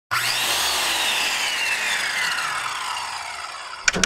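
Intro sound effect: a long metallic scraping whoosh that slides down in pitch and slowly fades, followed by a few sharp clicks near the end.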